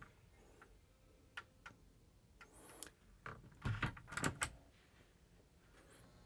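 Light clicks and wooden knocks, then a louder cluster of knocks and thumps about three to four seconds in, as a wooden cabin locker door is handled and a hinged set of wooden stairs is lifted up.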